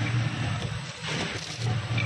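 Vertical form-fill-seal sachet packing machine running while it fills and seals small sachets of detergent powder: a low machine hum that swells about once a second with the packing cycle, over a steady mechanical noise.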